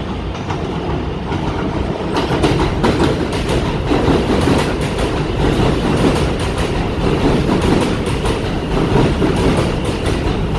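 New York City R160 subway train running past the platform, its wheels clacking rapidly over the rail joints. The rumble builds over the first couple of seconds as the train arrives, then stays loud as the cars go by.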